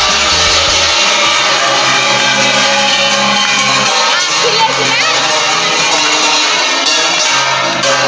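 Loud music mixed with the noise of a crowd, with cheering and children shouting.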